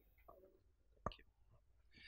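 Near silence, with one faint click about a second in from the handheld microphone being handled as it changes hands.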